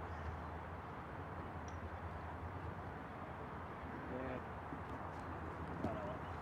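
Steady outdoor background noise with a low rumble, with a brief faint voice about four seconds in.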